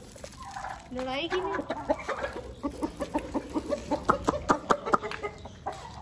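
Chickens and roosters clucking while they are being fed, ending in a quick run of short clucks, about five a second.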